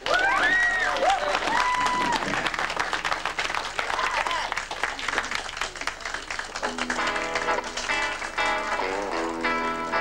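Audience applauding and cheering, with a few whistles and whoops in the first couple of seconds. About seven seconds in, a guitar starts playing sustained chords over the applause.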